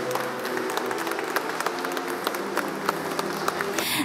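Guests applauding, many separate hand claps, over the faint held notes of a song fading out.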